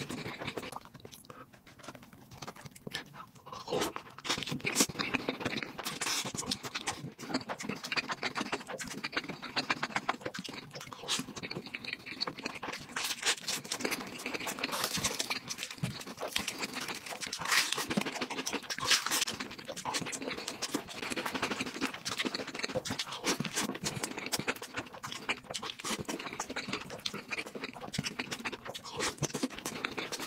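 Close-miked chewing and mouth sounds of a person eating fried, noodle-wrapped bread, with many small irregular crackly clicks.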